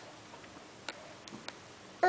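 Quiet room with a few light, sharp clicks, about four, in the second half.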